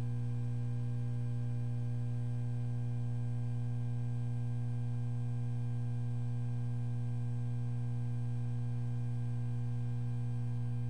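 Steady low electrical hum with a stack of fainter higher tones above it, unchanging throughout: mains hum on the audio line behind a blank title card.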